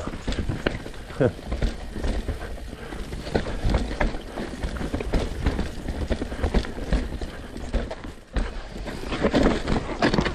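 Alloy Santa Cruz Bronson V3 mountain bike clattering over rocks and roots on a rough descent: tyres rumbling on dirt with a run of irregular knocks and rattles from the chain and frame. The noise drops briefly a little after eight seconds, then a sharp knock follows.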